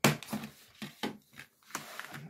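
Red plastic kids' DVD case being handled and opened: a run of sharp plastic clicks and knocks, the loudest right at the start.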